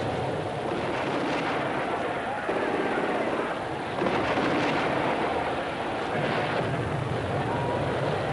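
Battle sound effects: a steady, dense rumble with a few sharper blasts about a second, four seconds and six seconds in.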